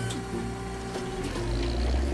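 Cartoon soundtrack: steady background music, joined about one and a half seconds in by a low engine rumble from a construction vehicle.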